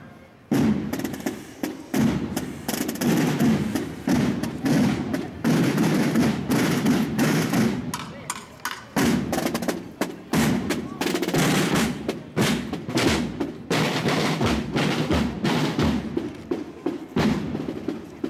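Marching band's drum section playing a rhythmic cadence on side drums, with drum rolls, after a brief pause about half a second in.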